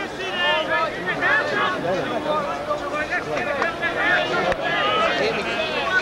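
Several voices shouting and calling over one another on a football pitch during a stoppage in play, the calls overlapping throughout.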